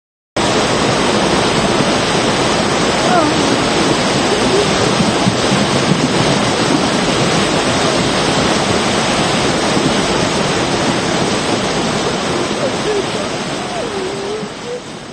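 Loud, steady rush of a muddy flash-flood torrent pouring down a steep, stepped street.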